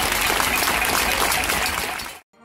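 A crowd of people clapping: steady, sustained applause.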